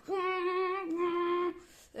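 A boy's voice imitating a car engine accelerating: a long held tone that rises at the start, steps slightly lower partway through, and stops about a second and a half in.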